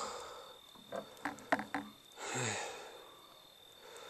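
A man sighing and breathing out heavily, with a few soft mouth clicks and then one long voiced sigh that falls in pitch about two seconds in: a sign of strain from the heat of a sweat lodge.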